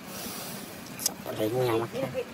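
A person's voice calling out a short word with a wavering pitch, just after a sharp click about a second in.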